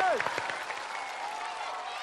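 Concert audience applauding, with high-pitched cheers and screams dying away in the first half-second.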